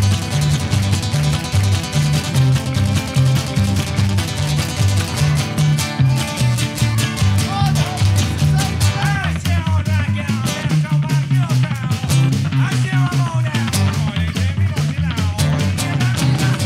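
Live band playing an instrumental break of an upbeat folk/rock drinking song, with an upright double bass keeping a bouncing rhythm in the low end and a wavering lead melody over it in the second half.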